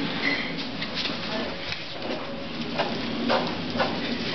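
Plastic Coleman cooler carrying two children being pushed across a hard floor, giving a steady rolling, scraping noise with a few short knocks in the second half.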